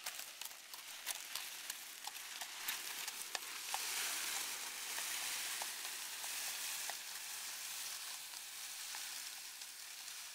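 A woven plastic builder's bag dragged along a gravel lane, a steady scraping hiss that grows louder about four seconds in, with scattered sharp clicks in the first few seconds.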